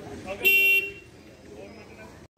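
A single short vehicle horn toot about half a second in, over faint outdoor street background.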